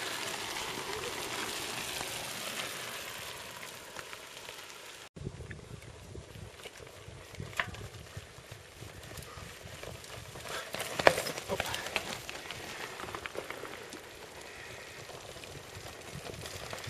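Mountain bikes rolling over a stony trail: a steady rush of tyre noise, then crunching gravel with scattered knocks and rattles as riders come down past, the sharpest knock about eleven seconds in.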